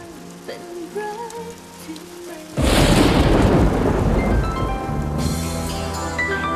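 A sudden thunderclap with a rush of rain noise about two and a half seconds in, fading over the next couple of seconds, over soft background music.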